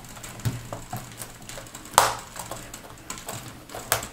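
Plastic retaining clips of a Dell Latitude D620's hinge cover strip snapping into place under finger pressure: a scattering of small clicks and taps, the sharpest about two seconds in and another near the end.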